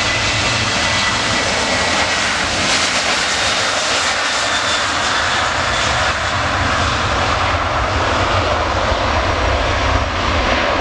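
Jet engines of a Ryanair Boeing 737-800 running steadily as the airliner rolls along the runway and lines up to depart, with a thin fan whine that fades a few seconds in.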